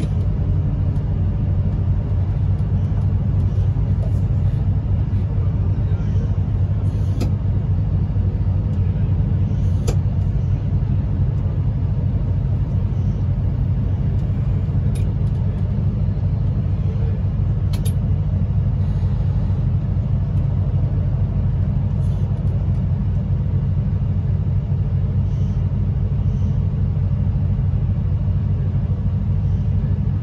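Steady low rumble inside a train's driver's cab, with a few faint clicks now and then.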